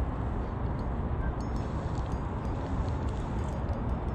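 Steady low rumbling background noise, with a few faint light ticks about a third of the way in as a spinning reel is cranked.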